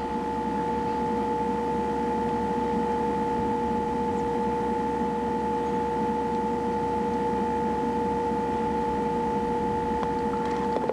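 A steady electronic whine at one pitch with a fainter tone an octave above, over a constant hiss, unchanging in level and pitch.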